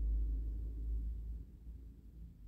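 Low rumble with almost nothing above it, fading out about a second and a half in.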